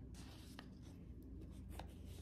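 Near silence: faint room tone with a low hum and two faint small clicks, one about half a second in and one near the end.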